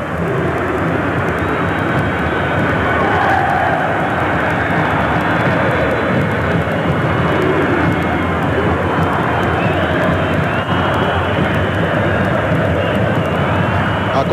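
Large football-stadium crowd making steady, dense noise throughout, with faint wavering chanting from the stands.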